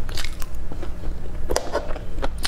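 Close-miked crunchy bites and chewing of broccoli florets: sharp crisp crunches come in two clusters, shortly after the start and again past the middle, over a steady low hum.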